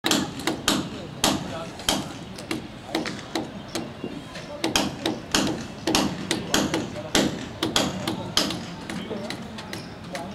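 Irregular sharp knocks, two or three a second, of hard leather cricket balls being struck by bats and hitting the pitch and nets during practice, over a murmur of voices.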